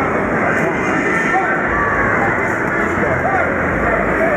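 Boxing crowd noise: many spectators shouting and chattering at once, a dense, steady din with single voices rising out of it now and then.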